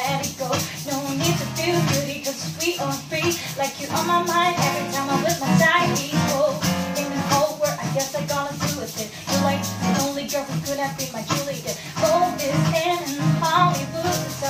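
Acoustic guitar strummed in a busy, percussive rhythm with low bass notes, accompanying a woman singing an R&B ballad.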